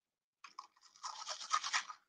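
A person sniffing a decorated cookie held up to the nose: a quick run of several short sniffs in the second half, after a faint click.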